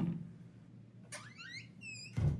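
A sharp knock as a plastic bottle is lifted off a cupboard shelf crowded with cleaning products. About a second later comes a run of short, high, rising squeaky tones, then a few quick high chirps.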